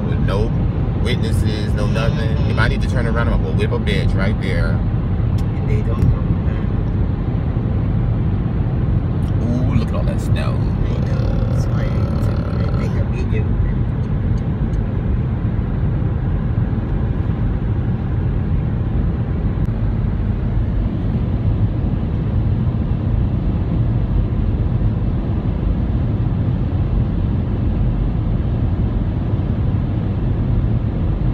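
Steady low rumble of road and engine noise inside a car cruising on the highway. Voices talk briefly near the start and again about ten seconds in.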